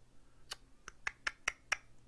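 Computer mouse scroll wheel clicking as a long list is scrolled: about seven short, sharp ticks at an uneven pace, starting about half a second in.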